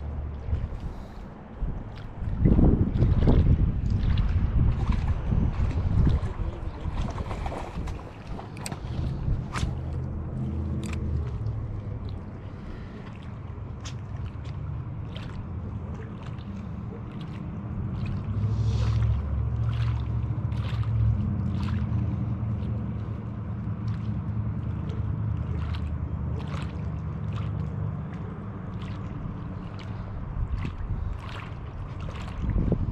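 Wind buffeting the microphone at a lake shore: a gusty low rumble, strongest from about two to six seconds in, then steadier, with scattered light ticks over it.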